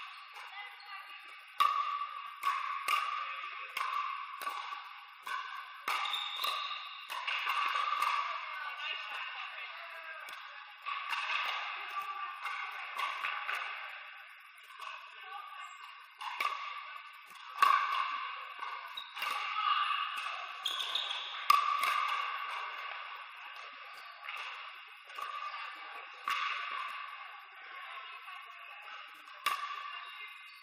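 Pickleball paddles striking a hard plastic outdoor ball in rallies, sharp irregular pops that ring on in a large indoor hall, over a murmur of voices.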